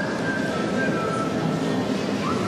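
Spectator murmur filling a large sports hall, with a thin high tone that slides up right at the start and then holds, stepping down in pitch a couple of times, like a whistled or played melody.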